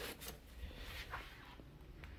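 Faint handling noises: a few light rustles and soft clicks as a foam brush applicator is picked up and handled.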